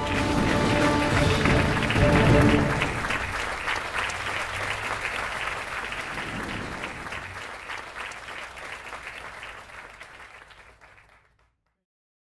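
Crowd applauding, with background music underneath. Both fade out gradually to silence near the end.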